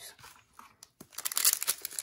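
Foil wrapper of a trading-card pack being torn open and crinkled, starting about a second in as a dense crackle.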